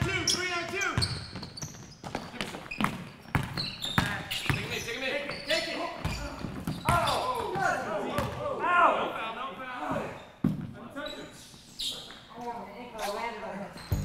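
Basketball bouncing on a hardwood gym floor in a pickup game, a handful of irregular sharp bounces, with players' voices calling out over it.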